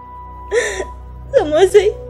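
A woman sobbing: a sharp gasping breath about half a second in, then a wavering, tearful cry near the end, over steady background music.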